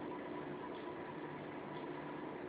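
Quiet steady hiss of room tone and recording noise, with a faint steady hum; no distinct sound events.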